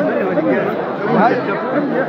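Men's chatter, several voices talking over one another at close range.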